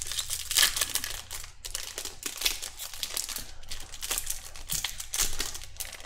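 A 2020 Bowman's Best baseball card pack wrapper being torn open and crinkled in the hands: a dense, irregular run of short rustles.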